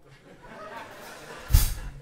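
A single drum hit about one and a half seconds in: a loud thump with a short low ring-out, over quiet room noise.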